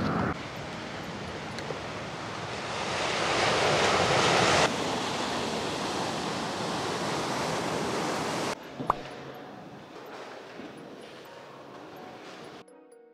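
Ocean surf washing onto a sandy beach: a steady rush of noise that swells for a couple of seconds and cuts off suddenly a few times, with wind on the microphone. In the last few seconds it drops to quieter room noise with a single click.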